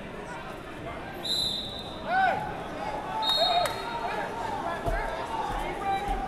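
Two short blasts of a referee's whistle, one about a second in and a shorter one about three seconds in, over shouting and voices echoing in a large gym hall.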